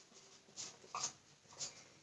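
Dry-erase marker squeaking faintly on a whiteboard in three short strokes as a word is written.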